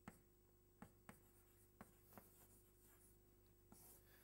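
Chalk writing on a chalkboard: faint, a handful of short taps and scratches spread unevenly through the few seconds, over quiet room tone.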